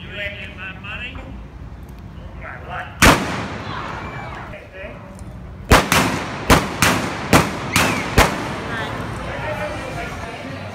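Blank gunshots from Old West gunfight reenactors: one shot about three seconds in, then a quick volley of about six shots roughly half a second apart, each trailing off in a short echo.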